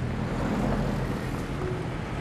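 A car engine idling, with a steady low hum.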